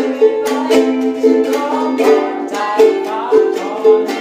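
Ukulele strummed in a steady rhythm of chords in a small room, with a boy singing along.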